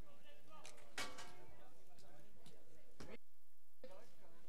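Indistinct voices of players and spectators on the court, with a sharp knock about a second in, the loudest sound, and a few lighter clicks. The sound drops out briefly near the end.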